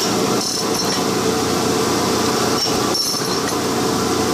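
Abrasive Machine Tool Co. Model 3B surface grinder running, its abrasive wheel grinding a forged steel knife blade while the table feeds automatically in slow mode. A steady, even hum with a constant hiss. The wheel is due for dressing.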